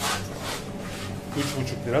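A man speaks briefly near the end, over a few light clicks and rustles of handling at a shop counter and a low steady hum.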